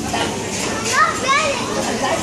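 Restaurant hubbub of voices, with a child's high voice rising in pitch in short glides about a second in.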